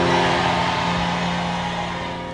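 Background keyboard music: one chord held steadily and slowly fading, with no speech over it.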